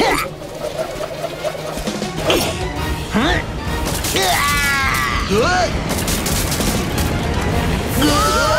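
Cartoon action soundtrack: background music throughout, with several sharp hit sound effects and short wordless cries and shouts from a character, strongest in the middle stretch.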